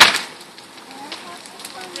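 A burning house structure fire: one loud, sharp crack right at the start, then lighter crackling and scattered pops over a steady rush.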